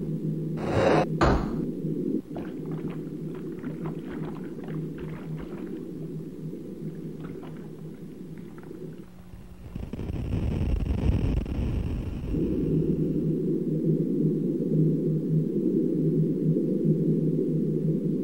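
Muffled underwater ambience in a cartoon soundtrack: a steady low drone with a faint hum and scattered faint clicks. About ten seconds in it swells into a low rushing whoosh, then settles back into the drone.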